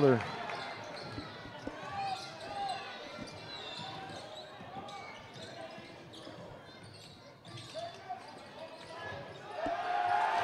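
Basketball dribbled on a hardwood gym floor, bouncing repeatedly, with players' shoes squeaking and crowd chatter filling the gym.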